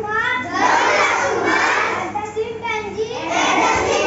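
A young boy reciting a poem aloud in a loud voice.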